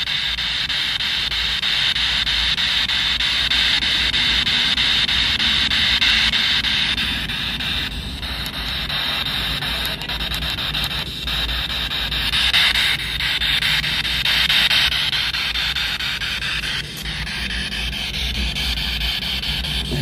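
Spirit box sweeping through radio frequencies: a continuous hiss of static chopped by short snatches of broadcast sound and music, its texture shifting every few seconds.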